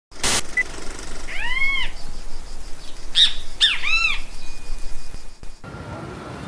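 A short burst of noise at the very start, then three short animal cries, each rising and then falling in pitch, about a second and a half, three seconds and four seconds in.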